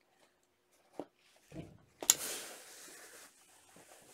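A light click and a soft knock, then about halfway a sudden hiss that fades over a second or so: a steam iron being set onto the fabric and letting out steam as a mask seam is pressed.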